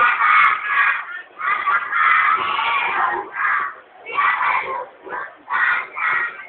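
A group of young children shouting together in loud bursts of about a second, with short dips between.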